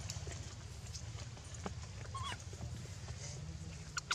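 A few short, faint squeaks from an infant macaque being handled, over a steady low rumble; a few sharp clicks come near the end.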